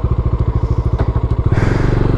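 Motorcycle engine running at low speed on a rough dirt track, its exhaust beating in a fast, even pulse; it gets louder about one and a half seconds in.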